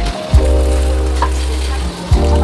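Beaten egg sizzling as it spreads in a hot oiled pan, over background music with a deep bass line.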